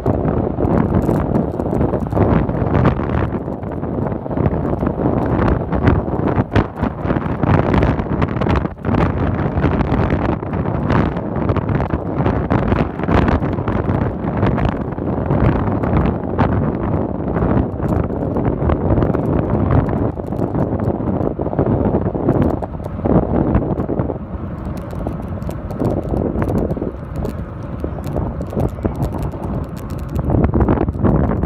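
Wind buffeting the microphone of a camera carried on a moving bicycle, with road noise and scattered knocks and rattles from the bike. The buffeting eases a little for the last few seconds.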